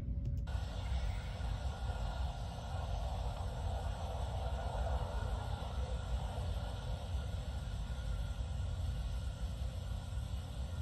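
Steady roadside ambience picked up by a police body camera's microphone: a continuous low rumble with a hiss over it, from wind and traffic on the road.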